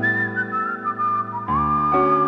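A man whistling a melody into a microphone over sustained instrumental chords. The whistled line steps down from a high note through several notes, then rises and holds one steady note near the end.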